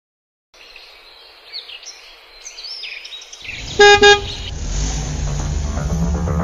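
Faint outdoor background noise with high chirps, then two short, loud horn honks about four seconds in, and music with a heavy low end coming in after them.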